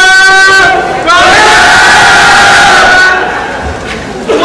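A group of teenage baseball players shouting a team cheer together in a huddle: a short call, then a longer held shout of about two seconds.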